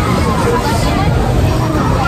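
Crowd babble: many people talking at once in a steady, loud hubbub.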